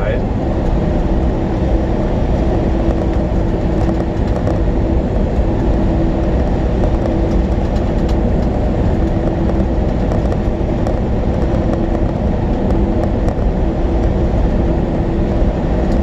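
Steady engine and road noise inside the cab of a moving sleeper-cab truck, with a steady hum running through it.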